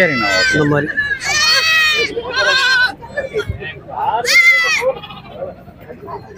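Goat kids bleating several times, with one longer, wavering bleat about a second in.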